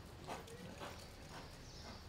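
Faint hoofbeats of a horse loping on soft arena dirt, about two beats a second.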